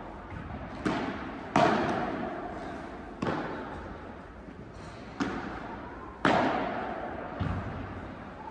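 Padel ball being struck by paddles and bouncing during a rally: about six sharp hits at irregular intervals of one to two seconds, each echoing in a large indoor hall.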